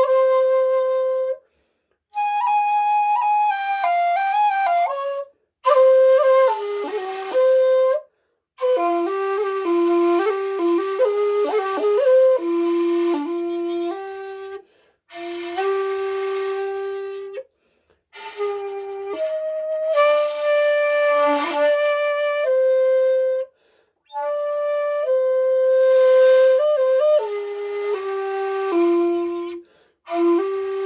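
A 1.8 bamboo shakuhachi played solo in a slow traditional piece: long held notes with pitch bends and quick ornaments, in phrases broken by short pauses for breath.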